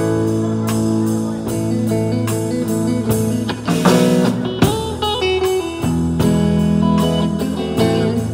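Live rock band playing: electric guitars over a drum kit keeping a steady beat, with a busier, louder run of drumming about halfway through.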